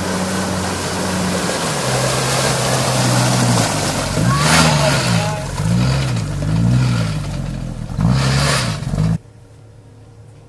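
A 4x4 SUV's engine revving up and down again and again as it churns through deep mud, wheels spinning in muddy water with splashing. The sound cuts off suddenly about nine seconds in.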